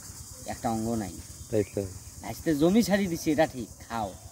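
A man talking in short bursts over a steady, high-pitched chorus of insects.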